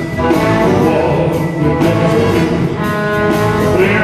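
Live band with a horn section playing a blues song, with a male singer's vocal over it.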